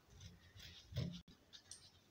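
Scissors cutting through dress fabric along a neckline curve: a few faint snips of the blades, with a brief low sound about a second in.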